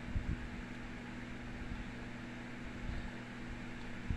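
Steady low hum with an even hiss: constant background room noise.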